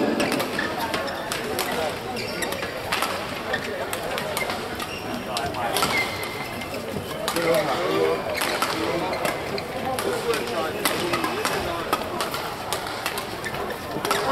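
Badminton rally: rackets striking a shuttlecock back and forth, a series of short sharp hits, over the murmur of spectators' chatter in the hall.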